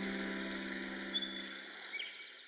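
Sustained piano chord dying away at the end of a piece, with a few faint bird chirps over the fading tail in the second half.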